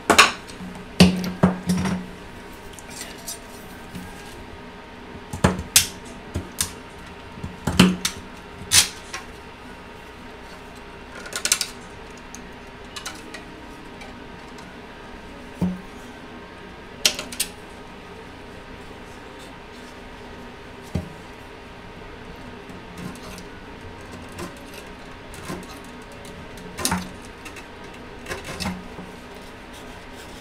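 Hands handling hard plastic 3D-printed tree models and a pen-shaped tool on a desk: scattered clicks and knocks, several close together in the first few seconds and a few more spread out after.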